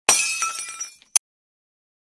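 Breaking-glass sound effect: a sudden crash with ringing tones that dies away over about a second, followed by one short sharp crack.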